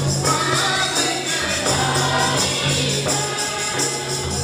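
A mixed group of men and women singing a gospel hymn together, accompanied by double-headed barrel hand drums and steady jingling percussion.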